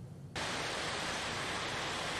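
A steady rushing hiss of outdoor background noise, like wind, cuts in abruptly about a third of a second in and holds level.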